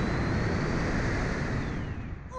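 Loud, steady rush of wind buffeting the ride-mounted camera's microphone as the Slingshot reverse-bungee capsule is flung up through the air, with a faint high tone rising and then falling behind it.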